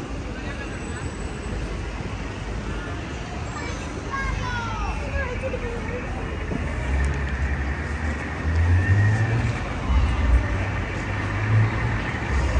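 Busy city street at night: road traffic running past, with a low engine rumble that builds in the second half as a vehicle passes, and passers-by talking.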